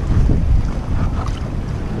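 Wind buffeting the microphone, a heavy low rumble that is strongest in the first half second, over a steady wash of surf against the rocks.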